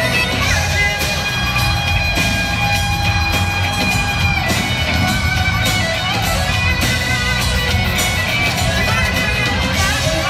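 A live rock band playing loudly, with an electric guitar line holding long, sustained notes over steady drums and bass.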